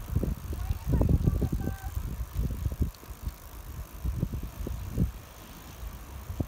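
Irregular, gusty wind rumble on the microphone of a moving bicycle, with the low rumble of tyres on the paved path.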